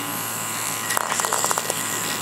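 Small electric motor of a furry battery-powered toy pet whirring as it drives across a hard floor, with a quick run of clicks about a second in.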